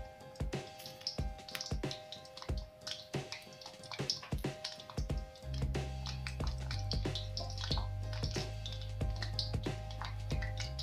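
Whole bitter gourds frying in hot oil in an iron kadhai as they go in one by one: scattered light crackles and pops of the oil, over soft background music. A low steady hum comes in about halfway.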